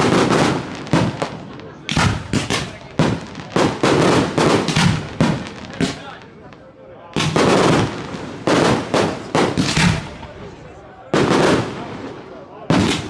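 Aerial fireworks shells bursting in rapid volleys of sharp bangs, each dying away. The volleys come in clusters: a dense run at the start, another from about 2 to 5 seconds in, a short lull, a volley around 7 to 9 seconds, and a lone burst near the end.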